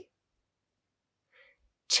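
Near silence between spoken phrases, broken only by a faint, short breath about a second and a half in.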